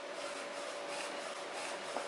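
Small A3 UV flatbed printer running a print pass: the print-head carriage travels along its rail with a steady hiss and a faint steady whine that fades out near the end.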